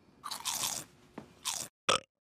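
A crunchy biting-and-chewing sound effect: a few crisp crunches and a short sharp last one near the end, then the sound cuts off suddenly.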